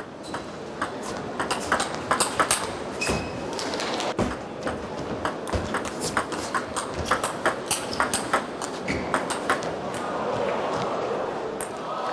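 Table tennis rally: a celluloid-type ball struck by rubber-faced rackets and bouncing on the table, in a run of sharp, irregular clicks. A wash of crowd noise swells near the end as the rally stops.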